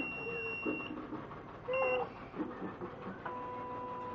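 CNY E900 computerized embroidery machine powering up: a long high beep, then a short second beep near two seconds in. From about three seconds in comes a steady motor hum as the embroidery unit starts to move.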